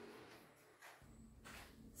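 Near silence: room tone, with a faint low rumble coming in about halfway.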